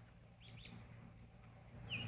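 Near silence: faint outdoor ambience with a single faint bird chirp about half a second in.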